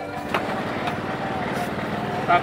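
An engine running steadily, with a couple of brief sharp clicks.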